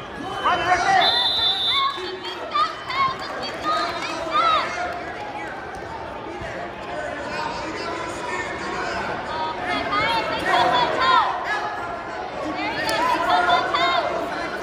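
Crowd chatter: many overlapping voices of spectators and coaches talking and calling out, with a brief high steady tone about a second in.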